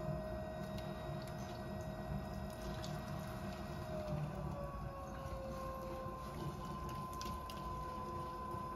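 Electric potter's wheel running with a steady motor hum and thin whine; about halfway through the whine drops slightly in pitch as a second, higher whine comes in, a change in wheel speed. Over it, wet hands and a sponge squish and rub on a large mound of clay being centered.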